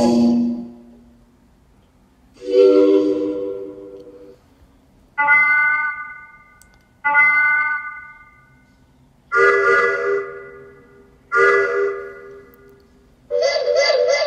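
Boat horns and whistles sounding one after another: six separate blasts of different pitch, each starting sharply and fading over a second or two. Some are low, some high, later ones sound two notes together, and the last one wavers.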